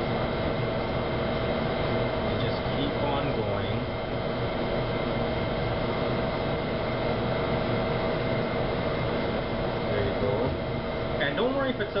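Steady hum of kitchen machinery, with a few constant tones held throughout. Faint voices come through in the background now and then.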